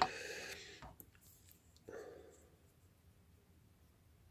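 Faint handling noises of a straight razor being picked up off a wooden board and opened: a short rustle at the start, a few light clicks, and another brief rustle about two seconds in.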